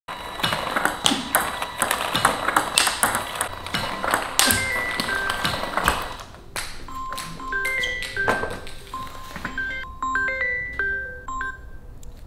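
Table tennis ball being hit back and forth, sharp clicks of bat and table about two a second. About halfway through, a smartphone ringtone plays a melody of short bright notes for an incoming call.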